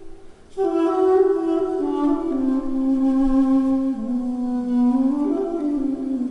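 Armenian duduk, a double-reed woodwind, playing a slow, smooth melody. A phrase begins about half a second in and steps downward in pitch, rises briefly near the end, then settles lower again.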